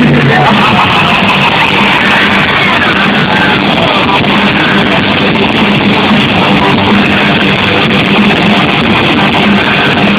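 Heavy metal band playing live, loud distorted electric guitars and drums running steadily, heard from within the concert crowd.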